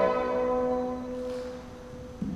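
Recorded orchestral music accompanying a dance: the last note of a phrase rings on and fades away over about two seconds.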